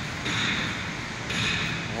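Construction-site machinery: a hissing noise with a steady high whine that swells and drops back about every second and a half, over a low rumble.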